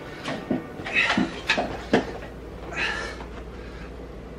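A man breathing out hard during push-ups, one breath about a second in and another near three seconds, with a few short knocks in between.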